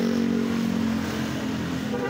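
A motor vehicle engine running steadily close by, a constant low hum with a steady pitch.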